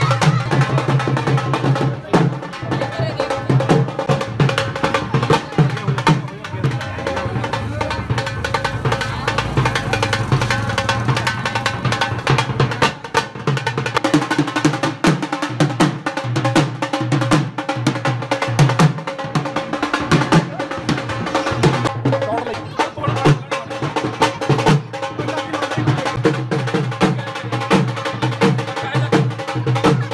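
Dhol drumming in a fast, steady rhythm with music, voices mixed in.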